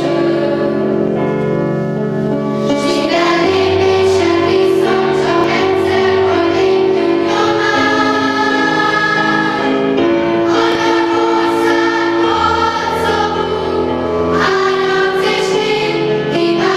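Children's choir singing together in long held notes, under the hand of a conductor.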